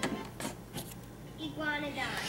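Sound from a General Electric portable TV's small speaker cuts off with a sharp click as the channel changes, followed by a few faint clicks. About one and a half seconds in, a voice from the new programme comes through the speaker.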